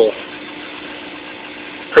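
Reef aquarium sump equipment running: a protein skimmer and pumps making a steady hum with a faint constant tone and a hiss of moving water and air.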